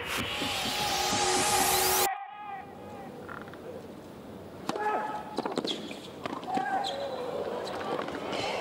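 Electronic intro sting with a rising sweep that cuts off about two seconds in. Then hard-court tennis: racket strikes and ball bounces in a rally, with brief sneaker squeaks over a quiet arena crowd.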